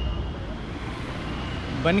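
Steady low rumble of city road traffic.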